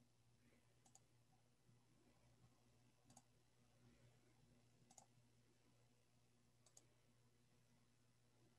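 Near silence: room tone with four faint clicks of a computer mouse, about two seconds apart.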